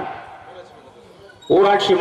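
A man's voice through a stage microphone and loudspeakers, with a word dying away in a reverberant tail at the start. After a pause of about a second and a half a loud, drawn-out spoken call begins near the end.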